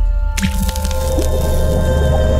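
Animated-logo sting: a held synth chord over deep bass, joined about half a second in by a sudden wet splash-and-crackle sound effect that carries on over the chord.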